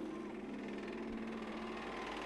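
Rookie banger stock cars' engines running on the oval, heard faintly as a steady drone.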